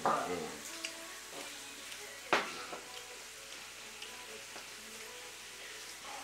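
Meat sizzling steadily in a pan, with a few light utensil clicks and one sharper click a little over two seconds in.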